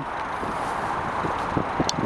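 Steady outdoor background noise, a hiss-like hum without any clear tone. A few faint taps come near the end, with one short click just before it ends.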